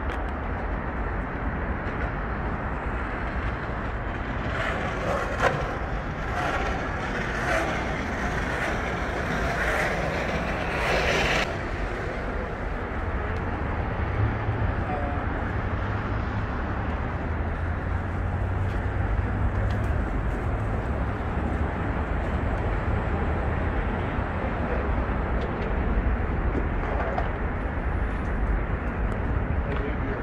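Steady city traffic noise from a busy multi-lane road below: a continuous low rumble of car engines and tyres. A louder, hissier stretch from about five to eleven seconds in cuts off suddenly.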